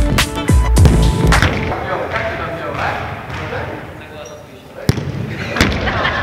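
A few heavy low booms, then a football kicked with a sharp thump near the end, with a second thump just after. Music and voices run underneath.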